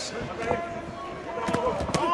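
Three sharp thuds from the boxing ring, about half a second in and twice near the end, over voices in the arena.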